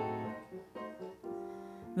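A soft jazz piano fill: a few chords struck about half a second apart, ringing on under the small band.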